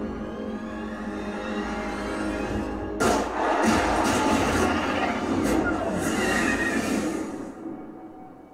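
TV drama soundtrack: sustained ominous music, then about three seconds in a sudden loud rushing noise with music under it, fading out near the end.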